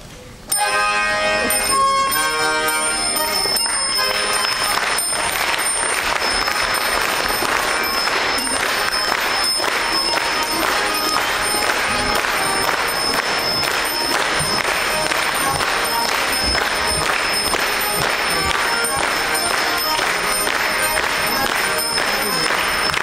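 Saratov harmonica, a small Russian button accordion fitted with bells, playing a lively, loud tune that starts suddenly about half a second in after a short pause, with its bells ringing. Audience clapping is mixed in.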